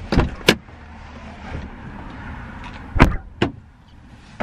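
Car door clunks and thuds as someone climbs out of the car: two sharp knocks near the start, then a heavier thud with a smaller knock about three seconds in, over seat and clothing rustle.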